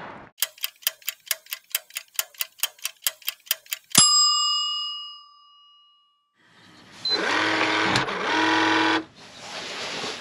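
Countdown sound effect: a run of clock-like ticks, about five a second for three and a half seconds, ending in a single bell ding that rings out and fades. A couple of seconds later a sustained synthesized tone sounds for about two seconds, with a brief break in the middle.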